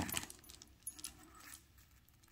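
Beads of a beaded necklace clicking and rattling against one another as it is handled, a cluster of light clicks in the first half-second, then a few faint ticks.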